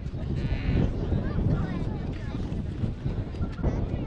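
Indistinct shouts and calls from voices on the pitch, with a short high-pitched call about half a second in. Wind rumbles on the microphone throughout.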